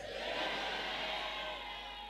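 Church congregation shouting and cheering in response to the preacher, a broad crowd noise that slowly fades over the two seconds, with a faint steady tone held underneath.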